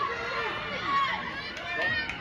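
Voices calling out and talking during a football match, with light crowd chatter in the open air.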